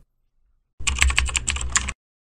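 Computer keyboard typing: a quick run of about a dozen keystrokes lasting about a second, starting a little before the middle.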